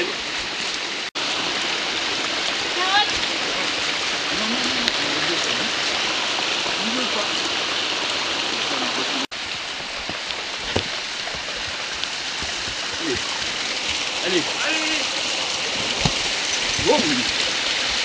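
A small woodland stream running over rocks, a steady rush of water, with faint voices over it. The sound cuts out for an instant twice, about a second in and about nine seconds in.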